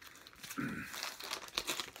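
An LP record in a plastic outer sleeve being handled and turned over, the sleeve crinkling and rustling in quick bursts. It ends with a throat being cleared.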